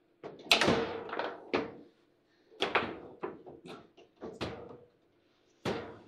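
Table football in play: sharp plastic clacks and knocks of the ball being struck by the rod figures and hitting the table walls, with the rods banging. They come in three quick flurries, then after a pause of about a second the knocking starts again near the end.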